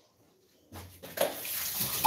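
Water running from a tap, starting under a second in and getting louder.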